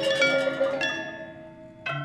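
Balinese gamelan bronze metallophones struck in a quick pattern that stops a little under a second in. The last notes ring on and fade, and a new sharp struck note comes just before the end.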